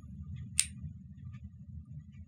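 A HARTING Han-D crimp contact clicking into place in the rear of a Han modular connector module: one sharp click about half a second in, the sign that the contact has latched and is correctly seated. Faint handling ticks sound around it.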